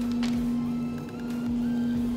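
Masking tape being peeled slowly off a freshly painted motorcycle fuel tank, heard under background music.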